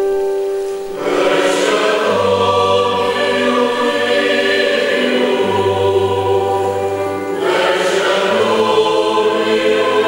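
Mixed choir of men and women singing with instrumental accompaniment over sustained low bass notes. The voices come in fuller about a second in and break briefly near seven seconds before the next phrase.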